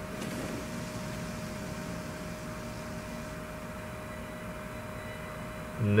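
Steady rushing noise of a cartoon fire sound effect, with a faint constant hum under it.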